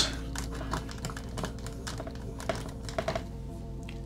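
Marker writing on a whiteboard: irregular light taps and strokes of the felt tip on the board, over faint steady background music.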